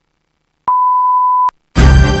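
Countdown leader beep: a single steady, pure high tone held for almost a second, ending sharply. Loud music starts right after it, near the end.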